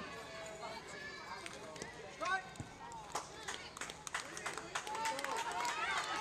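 Spectators' and players' voices calling and shouting across a softball field, with a single sharp knock about two seconds in.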